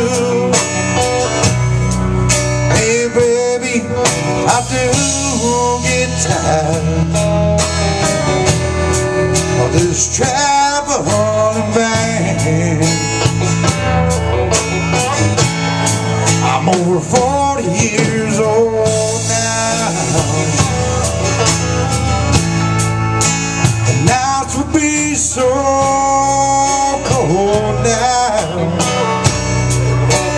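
Live blues-rock band playing loud: electric guitars with bending lead notes over bass and a steady drum beat with cymbals.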